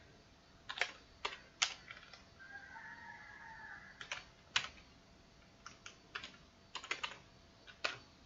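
Keystrokes on a computer keyboard: scattered single taps and short quick runs of clicks, with pauses between.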